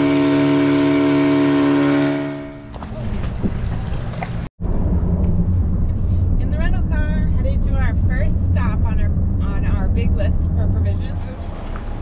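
A steady horn-like tone holding several pitches at once for about two seconds, fading in and out. After a brief break comes steady low road noise inside a moving car, with voices over it.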